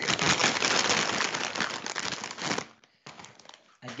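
Plastic chip bag crinkled and rustled close to the microphone for about two and a half seconds, then rustled again more briefly and quietly, heard unfiltered with the call's noise suppression switched off.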